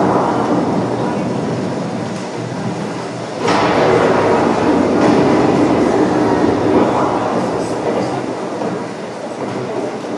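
The winterguard show's recorded soundtrack played loud over a gymnasium's speakers, a dense rumbling, reverberant wash with a sudden surge about three and a half seconds in.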